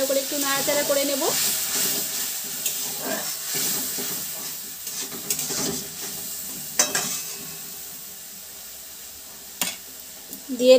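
Long metal spatula stirring and scraping a thick poppy-seed and tomato gravy around a steel kadai as it sizzles on the flame. The stirring eases off in the second half, leaving a quieter sizzle, with a couple of sharp metal clinks of the spatula on the pan.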